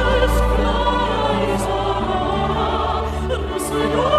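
A Christmas carol performed live: choir and mezzo-soprano voices holding sustained notes over a string orchestra, with a steady low note held underneath.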